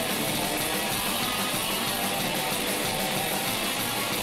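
Live heavy metal band playing loud: distorted electric guitar and drum kit with cymbals, in a dense, unbroken wall of sound.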